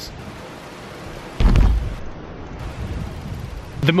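A steady rushing hiss, then a short, deep boom about a second and a half in that dies away slowly.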